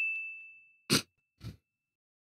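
The tail of a single bright bell-like ding sound effect, ringing and fading out in the first half second. Two short breathy sounds follow near the middle.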